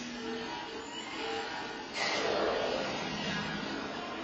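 Soundtrack of a 7D motion-theater ride film over the theater speakers: a steady rushing with a few short low tones, then a sudden louder rush about two seconds in.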